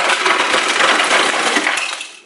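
Refrigerator door ice dispenser dropping ice cubes into a plastic cup, a loud, dense rattling clatter that stops near the end.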